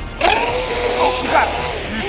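Battery-powered RC speedboat's electric motor whining up as the throttle is opened, then holding a steady pitch for about a second and a half. This is full throttle used to set the hook on a fish. A person's voice calls out over it.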